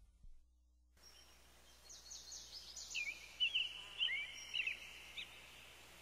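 Faint birds chirping over a low steady hiss: a quick run of short twittering calls begins about two seconds in and dies away near the end, after a second of silence.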